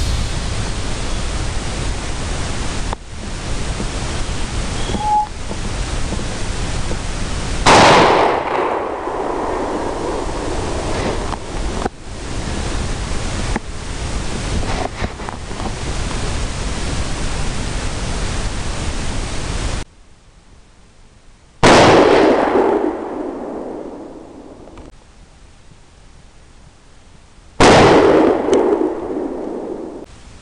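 Three suppressed rifle shots, about 8 s, 22 s and 28 s in, each a sharp report with an echo that rolls away over a couple of seconds. A steady hiss runs under the first two-thirds and stops suddenly before the second shot.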